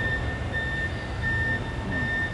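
An electronic warning beeper sounding a short high beep over and over at an even pace, about one and a half beeps a second, over a low steady rumble.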